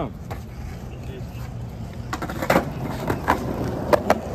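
Skateboard rolling on a concrete sidewalk: a steady low wheel rumble, with several sharp clacks of the board in the second half.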